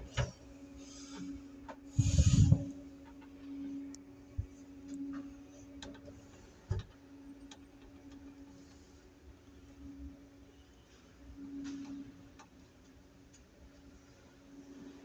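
Paternoster lift cabin running between floors: a steady low hum from the drive, with scattered clicks and ticks from the mechanism. A louder bump comes about two seconds in.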